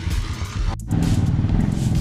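Motorcycle engine idling with a steady low rumble. There is a brief dropout a little before the middle, after which it is louder.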